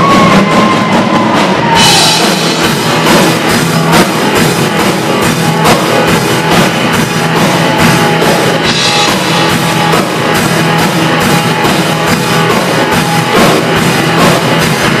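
A live band playing loud rock-style music, with a steady drum-kit beat and a strummed acoustic guitar.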